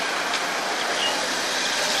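Steady background hiss of distant road traffic.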